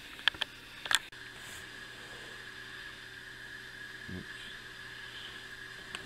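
A few light clicks in the first second, then faint steady room hum with a thin constant tone.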